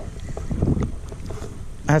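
Wind buffeting the microphone in a low, uneven rumble, with water lapping around a small boat.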